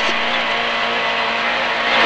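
Rally car engine heard from inside the cabin, held at steady revs with an even drone and no change in pitch, over road and tyre noise.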